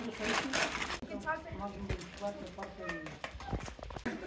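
Several people talking casually in the background, with laughter near the end. A short burst of noise comes in the first second.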